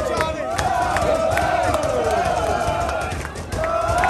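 A group of football supporters singing a chant together, many voices on drawn-out notes, with scattered sharp claps. The singing dips briefly near the end, then picks up again.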